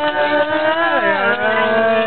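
A man singing unaccompanied in long held notes, the voice sliding down to a lower held note about a second in.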